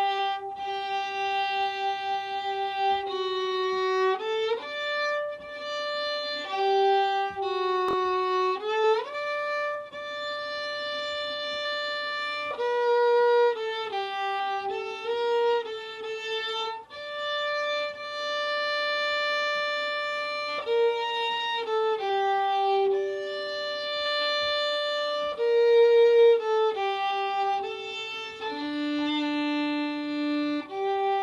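Solo violin playing a slow étude in long sustained bowed notes, with some notes joined by slides as the left hand shifts.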